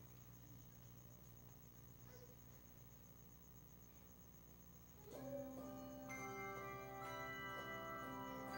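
A handbell choir begins playing after about five seconds of near silence: bells are struck one after another, about a second apart, and left ringing so that their notes build into sustained chords.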